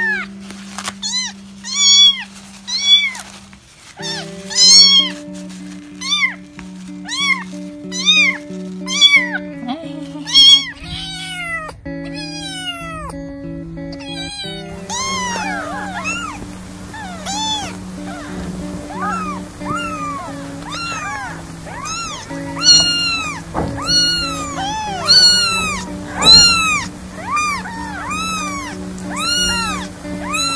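Young kittens meowing over and over, high thin cries that rise and fall, about one a second. About halfway through, a second kitten's cries take over, closer together and steadier. Background music with a simple run of notes plays under them.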